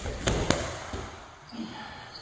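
A thrown person's body landing on a padded wrestling mat: two heavy thuds within the first half second, a quarter second apart. A smaller sound follows about a second later.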